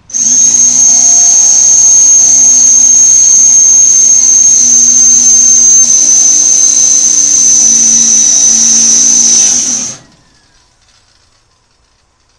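Hand-held electric drill drilling into metal, running at a steady speed with a high whine for about ten seconds, then stopping suddenly.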